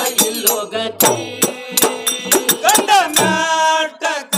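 Men singing a Moharam pada, a Muharram devotional folk song, to struck drum beats, the voice ending on a long held note near the end.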